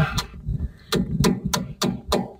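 Hammer blows on a chisel chipping cement render off the corner of a concrete wall: a run of sharp strikes, about three a second, starting about a second in.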